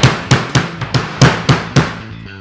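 Drum kit played in a quick run of about seven hits, with the bass drum prominent. The bass drum sits level on an Arti Dixson bass drum lift, which the player says gives it more projection, punch and low end.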